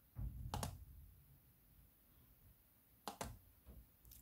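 Faint clicks of a ThinkPad laptop's touchpad button: one about half a second in and another just after three seconds.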